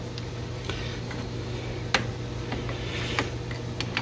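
A few light metallic clicks and taps as a tool holder is changed on a metal lathe's quick-change tool post, the loudest about two seconds in, over a steady low hum.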